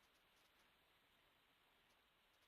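Near silence: only the faint, steady hiss of the recording's noise floor.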